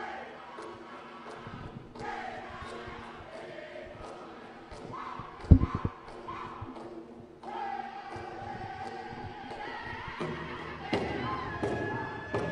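Powwow drum group singing a shawl-dance contest song in chorus over a steady drumbeat of about two strokes a second. A few heavy thumps land about five and a half seconds in, and the drum grows louder near the end.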